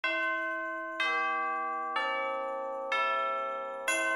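Background music of bell-like tones: a new chord struck about once a second, each ringing on and slowly fading.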